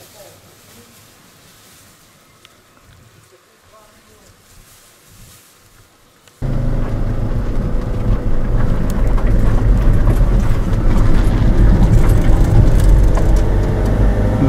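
Faint background at first. Then, about six seconds in, the loud, steady engine and road noise of a van driving suddenly begins, heard from inside its cabin.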